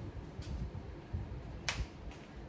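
A single sharp snap near the end, with a fainter click earlier, over low thudding handling noise as cleaning supplies are picked up and handled.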